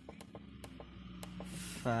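A few light, irregular clicks of a fingertip pressing buttons on a genset control panel, over a steady low hum. A man says "five" near the end.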